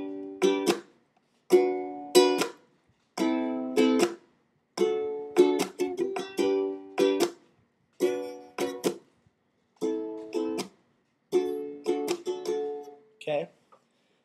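Ukulele strumming the song's four-chord progression (G, a chord barred at the second fret, A minor, D) in a down-up pattern with muted chop strokes. Each group of strums is cut off short, leaving brief gaps of silence.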